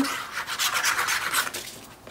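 Dry rubbing and scraping on paper as the plastic nozzle of a liquid-glue squeeze bottle is drawn along the back of a cardstock panel, fading out near the end.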